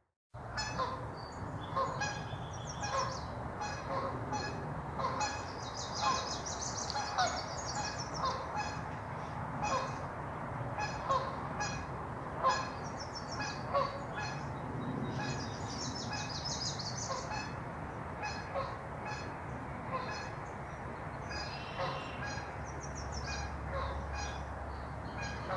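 Geese honking repeatedly, short calls about once a second, with small songbirds chirping and trilling high above them.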